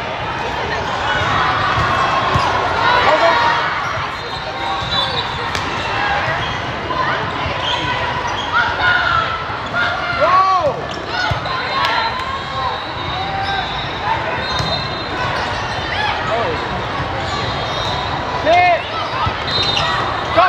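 Indoor volleyball play in a large, echoing hall: a steady din of many voices, with thuds of the ball being passed and hit, and sneaker squeaks on the sport court scattered through.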